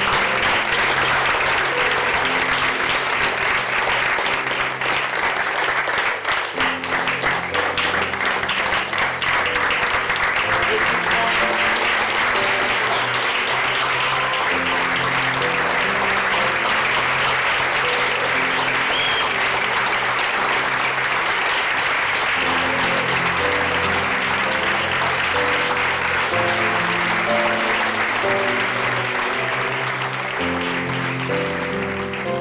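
An audience applauding steadily over background music with a melody of sustained notes.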